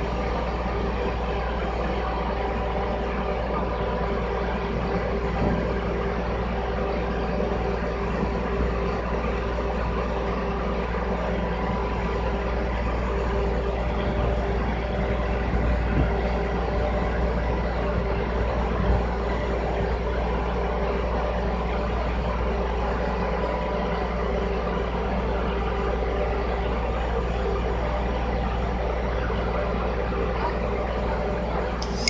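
Crawler crane's diesel engine running steadily while it holds a suspended precast concrete column, with a few light knocks.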